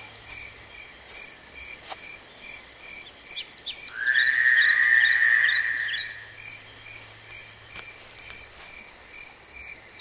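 Countryside wildlife: an insect or frog calling in a steady pulse about three times a second, with short bird chirps. A louder call of about two seconds comes in about four seconds in.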